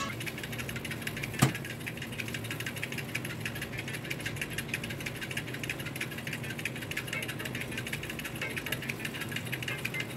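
Electric oven running with its rotisserie turning a whole chicken: a steady hum with fine, fast ticking and crackle, and one sharp click about a second and a half in.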